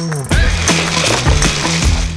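Background music with a rushing noise laid over it from just after the start and a few deep bass thuds, a video transition effect.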